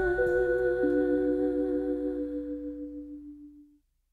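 Closing chord of a live band's song ringing out: several held notes, one of them wavering slightly, fading away to silence about three and a half seconds in.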